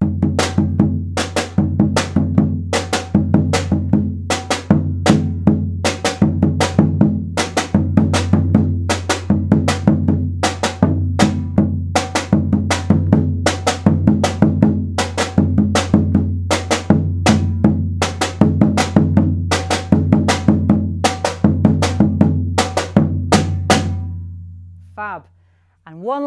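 Maracatu-style drum rhythm on a rope-tuned alfaia bass drum and a metal snare drum: deep booms against sharp 'check' hits, about three to four strokes a second, the repeated pattern played four times. The bass drum's low ring carries under the strokes and dies away near the end.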